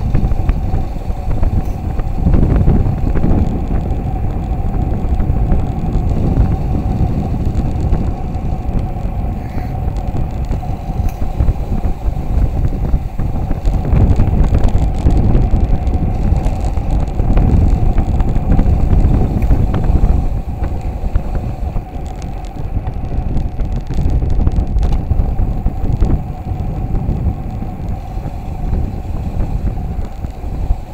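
Wind buffeting the microphone of a camera riding on a road bike during a fast downhill descent: a loud, rumbling rush that swells and eases with speed, loudest about halfway through, with a steady hum underneath.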